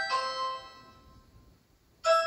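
Electronic doorbell chime from a Ring Chime speaker: the last two notes of its ding-dong melody sound at the start, then ring out and fade away to near silence about a second and a half in.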